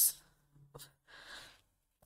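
A word of speech trailing off, then a pause with a soft exhaled breath, sigh-like, about a second in, and a couple of faint mouth clicks.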